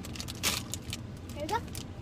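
Plastic snack bag crinkling and tearing as it is pulled open by hand, a string of short crackles with the sharpest about half a second in.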